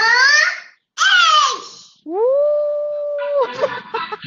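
A young child shouts into the microphone as loudly as he can, in two long drawn-out cries, the first rising in pitch and the second falling. A woman follows with a long, steady 'ooh', and near the end a burst of the lesson app's reward music starts.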